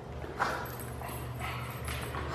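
A pug sniffing, with a short sharp snuffle about half a second in and a fainter one later, over a steady low hum.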